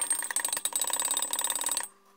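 Teaspoon stirring coffee in a ceramic mug, a rapid run of clinks with a bright ring. It stops sharply just before the end.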